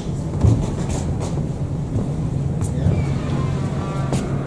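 A steady low hum, with a short bump about half a second in.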